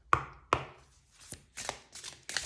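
A deck of oracle cards knocked twice against a wooden tabletop, two sharp taps within the first half second, followed by softer clicks and the rustle of cards being slid apart and spread near the end.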